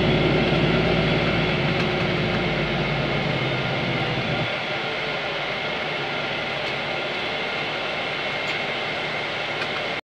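Cabin noise of a city bus's Cummins ISB6.7 inline-six diesel running on the move, heard from inside among the passengers. About four and a half seconds in, the low engine hum falls away sharply, leaving a quieter steady cabin rumble.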